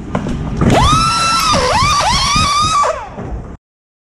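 Pneumatic pit-stop impact wrench whining at a high pitch over a hiss of air. Its pitch dips sharply a few times as it bites on the lug nuts. The sound cuts off suddenly about three and a half seconds in.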